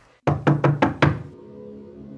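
A quick run of about six knocks in just over a second. A soft, steady ambient music drone with held tones then takes over.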